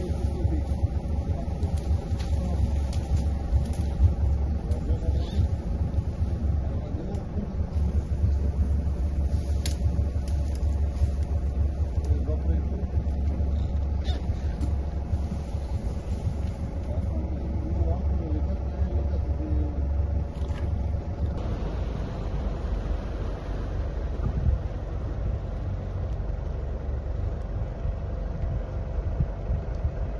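Boat engine running at low speed, a steady low rumble whose note shifts about two-thirds of the way through.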